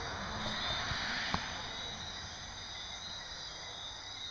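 Night-time outdoor ambience: insects singing in steady high tones over a low, even background rumble, with a single sharp click about a second and a half in.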